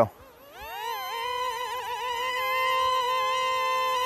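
XK A100 J-11 RC plane's twin brushed electric motors and propellers spooling up to a high-pitched whine about half a second in, then holding near full throttle with a slightly wavering pitch.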